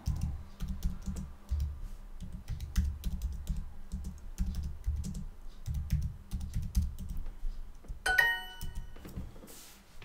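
Computer keyboard typing, quick irregular keystrokes for about eight seconds. Near the end, a short electronic chime sounds: the language app's signal that the typed answer was checked and accepted.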